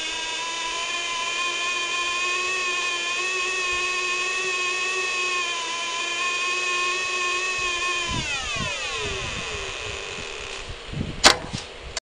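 Electronic tone from an oscillator and bandpass-filter test rig. It is buzzy and steady, with many overtones. About eight seconds in, the pitch glides down and fades. A sharp loud click comes near the end.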